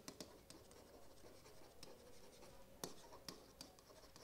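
Faint sounds of a stylus writing by hand on a tablet or pen screen: light scratching with a few small clicks as the pen tip touches down, one a little sharper near the end.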